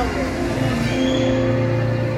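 Busy indoor play-hall din: background music with a steady, deep bass line under children's voices and shouting.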